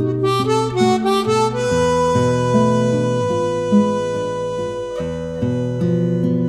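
Chromatic harmonica and acoustic guitar playing a tango duet. The harmonica runs through quick notes, then holds one long note for about three seconds while the guitar plucks notes beneath it, and quick phrases resume near the end.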